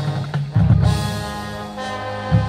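High school marching band playing: brass over low drums, with a loud accent about half a second in, then a held chord.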